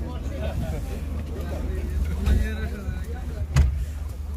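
Steady low rumble inside the cab of a Chevrolet Damas microvan, with faint voices in the background and a single sharp click about three and a half seconds in.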